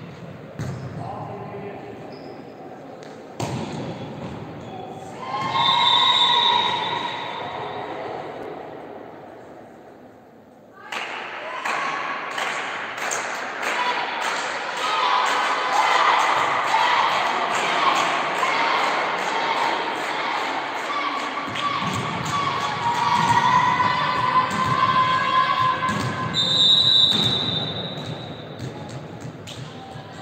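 Indoor volleyball match: the ball being struck and hitting the floor during rallies, with players and spectators shouting and cheering. A steady rhythm of claps runs through the second half.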